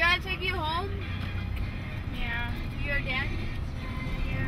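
Steady low rumble of a car's cabin while driving. A person's voice is heard in two short stretches, near the start and again about two seconds in.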